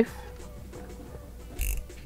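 Soft background music, with a short clicking rattle near the end from a yellow snap-off utility knife being picked up and handled.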